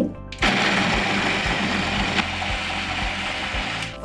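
Electric food processor running steadily as it grinds soaked whole almonds into a fine meal. The motor starts about half a second in and stops just before the end.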